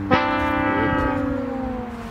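Comedic "sad trombone" sound effect: its final long, drooping note, held for about two seconds and fading, the gag sound for a flop.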